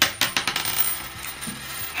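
A flipped coin landing on a wooden tabletop, clicking and bouncing several times in quick succession before rattling to rest.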